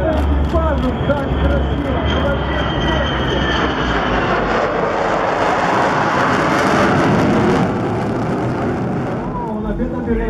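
Tupolev Tu-160 bomber's four NK-32 afterburning turbofan jet engines passing low overhead: a high whine falling in pitch over the first few seconds, under a rising jet rush that is loudest about six to seven seconds in and drops off abruptly just before eight seconds.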